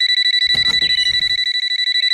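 Cartoon mobile phone ringing: a steady, high electronic ring tone with a fast pulse. A brief scuffle comes under it about half a second in.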